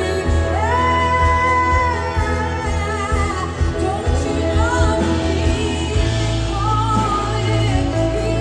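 Live worship song played through a PA: a woman sings the lead, with long held notes, over acoustic guitars, keyboard and a steady bass.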